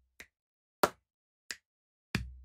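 Body percussion rock rhythm played with the hands at a steady pulse of about one stroke every two-thirds of a second: a finger snap, a loud hand clap, then another finger snap. The low thump of a chest slap fades out at the start.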